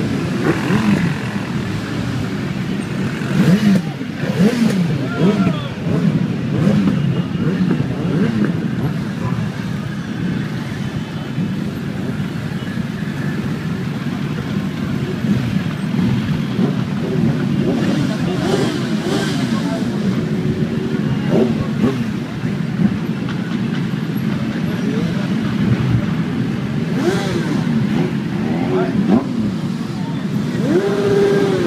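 Many motorcycle engines running as a column of bikes rolls past at walking pace, throttles blipped so the revs rise and fall again and again, overlapping one another.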